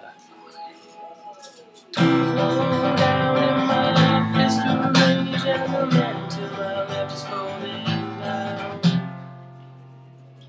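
Acoustic guitar strummed in open chords, the four-chord C, G, A minor, F pattern of the song's opening. After faint ringing, the strumming starts suddenly about two seconds in with a strong stroke about every second, and near the end the last chord is left to ring out.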